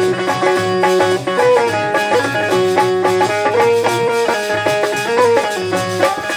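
Instrumental interlude of a Bundeli folk song: a harmonium plays a melody of held notes that step up and down over a steady lower accompaniment.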